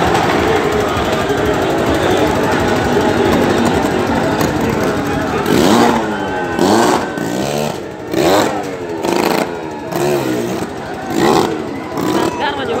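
A loud, noisy din for the first five seconds or so, then several loud shouted calls, one after another, in the second half.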